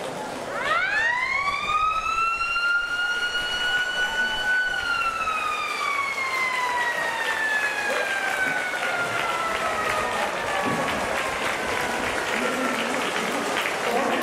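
Stadium siren winding up for about four seconds, holding briefly, then slowly falling in pitch: the game-end siren of Japanese high school baseball, sounded as the teams bow at the close of the game. Applause from the stands joins beneath it in the second half.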